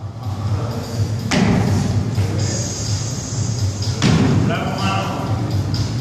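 Two heavy thuds, about a second in and about four seconds in, over a steady low gym background with faint music.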